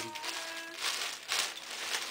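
Plastic bubble wrap crinkling and rustling as it is handled and pulled open, in several short crackly bursts through the second half.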